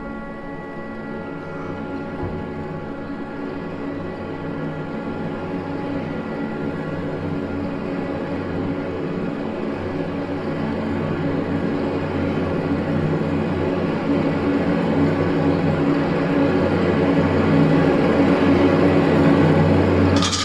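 Contemporary chamber music for instrumental ensemble and electronics: held tones at the start melt into a dense, rumbling, noisy mass of sound that swells steadily louder throughout.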